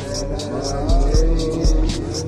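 Recorded music with a steady drum beat, low kick-drum thumps and regular hi-hat hits about four a second, with a melody line over it.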